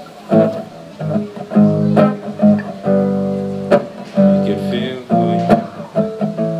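Acoustic guitar played solo: picked and strummed chords left to ring, changing every second or so, with a sharp percussive accent about every two seconds.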